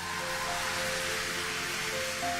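Music from a live concert recording: several held instrumental notes under a steady wash of audience noise.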